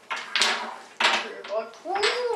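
Wooden Jenga-style blocks clattering against each other and the table as they are gathered and stacked into a tower: two short bursts, one near the start and one about a second in.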